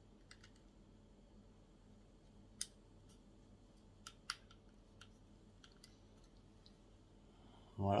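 A few small, sharp clicks of plastic and metal parts as a small piece is pressed and fitted into place on a scale-model engine by hand. The loudest click comes about two and a half seconds in, with two more close together about four seconds in.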